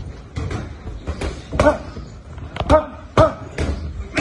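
Boxing gloves striking focus mitts in a series of sharp smacks, about seven punches thrown in quick combinations, some landing in fast pairs.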